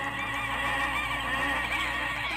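A person's high, wheezy laugh, held and quavering in pitch, quieter than the talk around it.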